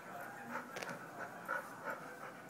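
A dog panting close by in quick short breaths, with a sharp click about halfway through.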